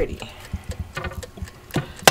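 Metal fork clicking and scraping against a nonstick Gourmia air fryer basket while hot jerk chicken wings are poked and moved, a few irregular short clicks.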